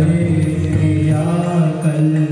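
A group of voices chanting a Hindu aarti hymn in unison, holding long steady notes.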